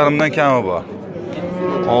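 A young bull mooing: one long, steady call over the second half, after a man's voice briefly at the start.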